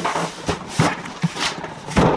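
A large cardboard box being handled: scraping and rustling with a few knocks, ending in a sharp thump as it is set down on the table.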